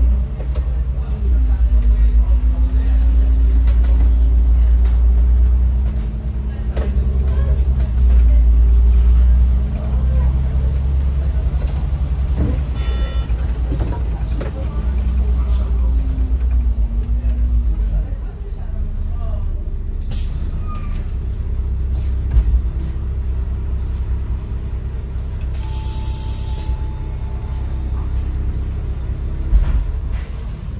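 Autosan Sancity M12LF city bus heard from the driver's cab: the engine pulls and rises in pitch as the bus accelerates, then eases off in the second half as it slows. A short hiss of compressed air comes about two-thirds of the way through, and a longer hiss with a steady beep near the end.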